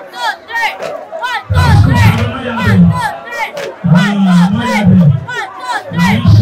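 A group of uniformed cadets chanting in call and response: a high lead voice calls out quick lines, and the group answers twice in loud, low unison shouts, about a second and a half in and again about four seconds in.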